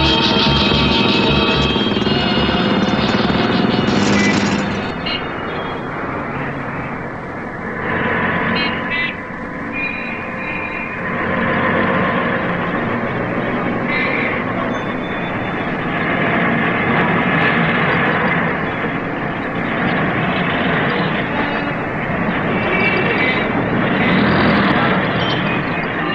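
Background film music with a steady beat for the first five seconds or so, then the noise of a busy street: vehicle engines and traffic with indistinct voices.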